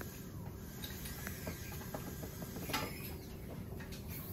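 Faint room background with a steady low hum and scattered small clicks, one sharper click near three seconds in, and a couple of faint sounds that rise and fall in pitch.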